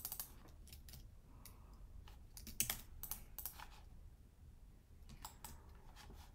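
Faint computer keyboard keystrokes and clicks in a few short, irregular bursts, as a file name is typed into a save dialog.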